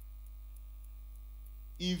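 Steady low electrical mains hum, unchanging through a pause in the talking.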